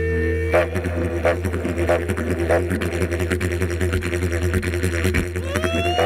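Didgeridoo playing a steady low drone, taking up a rhythmic pulse about half a second in. Near the end a voice slides upward into a held higher note over the drone.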